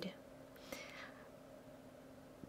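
A pause in the narration: the end of a spoken word, then a faint breath intake a little under a second in, over a faint steady hum.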